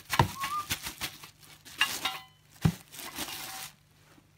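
Clear plastic bag crinkling and rustling in bursts as it is shaken and pulled off a stainless steel cocktail shaker, with a brief squeak near the start and a couple of dull knocks.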